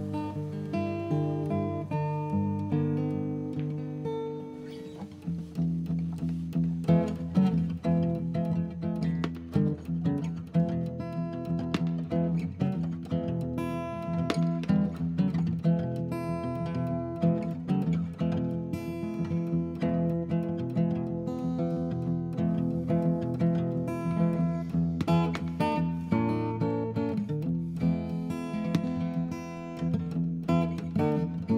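Acoustic guitar music, strummed and picked, an instrumental passage with no singing.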